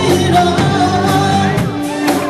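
A live classic rock band playing, with a lead singer over electric guitar and drums.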